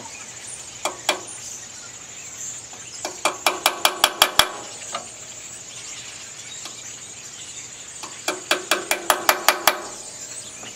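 Hammer strikes on a punch peening the aluminum of a Briggs & Stratton 11 HP engine block over the edge of a pressed-in valve seat to hold it in place: two taps, then two quick runs of about nine ringing metallic strikes each, a few seconds apart.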